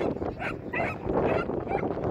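An excited dog yapping, about four short high-pitched yips in quick succession, over steady background noise.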